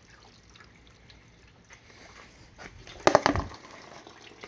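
Faint trickling and dripping of water poured through a funnel into the coolant fill neck to flush a brand-new radiator. A brief cluster of sharp knocks about three seconds in is the loudest sound.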